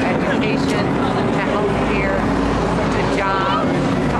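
A woman talking over the low, steady rumble of a vehicle engine, which grows stronger about a second in.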